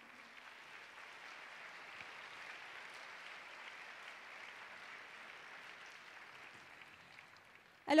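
Audience applauding, faint and steady, dying away near the end.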